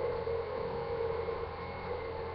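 Steady low hum with a light hiss of room tone. Nothing in it starts, stops or changes.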